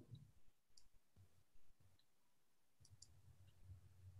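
Near silence: faint room tone with a few small, faint clicks.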